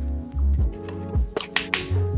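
Background music with a deep bass line and sharp clicks on the beat.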